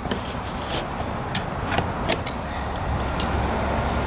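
Steel pry bars clinking and scraping against the pressed-steel wheel rim of a small 9x3.5-4 tire as the rim is levered out of the tire bead: a run of light metallic clinks at irregular intervals.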